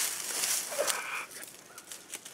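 Dry leaf litter crackling and rustling, with clothing brushing, as a person crawls in under a low tarp and sits down on the ground. The rustling dies down about halfway through.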